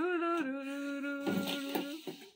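A person humming one long held note, the pitch wavering briefly at the start and then holding steady, with a short noisy burst over it in the second half.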